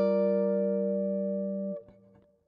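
Clean electric guitar ringing a Gm7 chord fretted at the 10th fret, slowly fading, then cut short by muting near the end.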